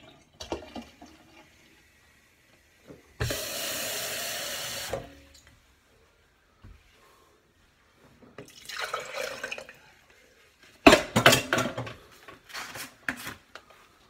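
Kitchen sink tap running for about two seconds, then shut off. Later comes a burst of knocks and clatter as a cup is handled.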